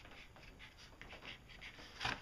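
Faint scratching of a pencil drawing short strokes on a sheet of cardboard.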